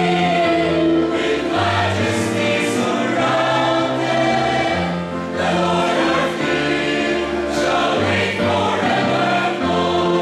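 A mixed choir of men's and women's voices singing in harmony, holding chords that change every second or so, with crisp sibilant consonants here and there.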